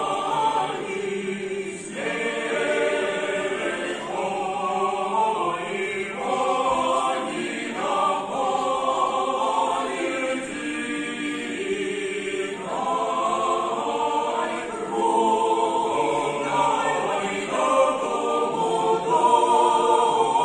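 Mixed choir of men and women singing a cappella, in phrases of a few seconds with brief breaks between them.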